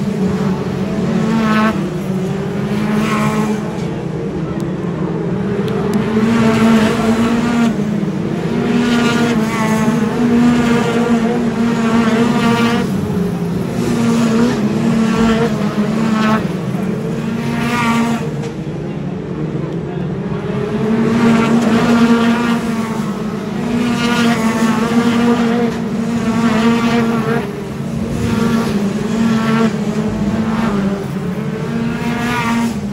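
Several Brisca F2 stock cars racing round the oval, their engines revving and easing in a continuous rising and falling drone as the pack laps past.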